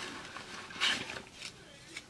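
Soft rustling of a hand rummaging in a handbag's fabric-lined interior pouch and drawing out a small paper card, loudest about a second in.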